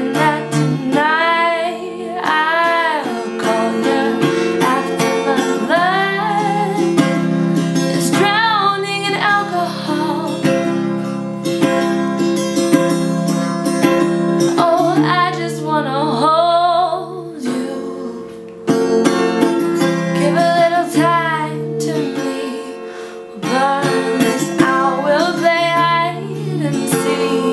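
A woman singing with acoustic guitar accompaniment, holding long notes with a wavering pitch over steady guitar chords; the music softens briefly twice in the second half before building again.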